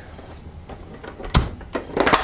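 A single sharp knock, with a few faint clicks after it, as hands take hold of the hard plastic cover of a vacuum cleaner powerhead to lift it off.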